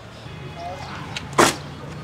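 Steady low hum of road traffic, with a single sharp smack about one and a half seconds in.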